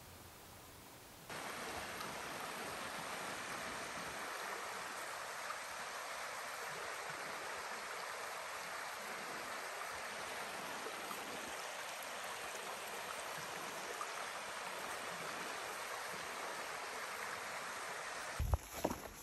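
Shallow mountain stream running over rocks: a steady rush of water that starts suddenly about a second in.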